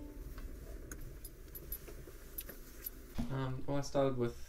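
Car cabin sound as the car pulls slowly into a carport: a low rumble from the car with light metallic jingling of keys. A man's voice starts about three seconds in.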